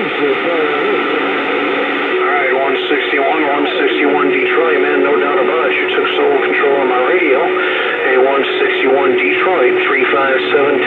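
Uniden Bearcat CB radio on channel 28 receiving distant skip stations: garbled voices through static from the radio's speaker, with a steady low heterodyne whistle that joins about two seconds in.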